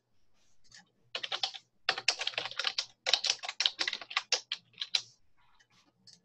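Typing on a computer keyboard: a quick run of keystrokes that starts about a second in and stops about a second before the end.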